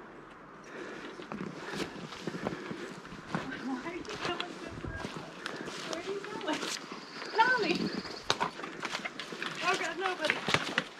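Footsteps crunching over dead branches and forest litter, with irregular cracks and snaps of twigs as hikers step through fallen trees, and faint voices.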